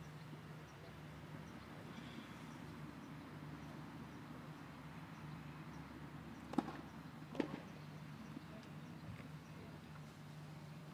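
Tennis serve: a racket strikes the ball with a sharp pop about six and a half seconds in, followed less than a second later by a second sharp knock of ball on racket or court, over a steady low hum.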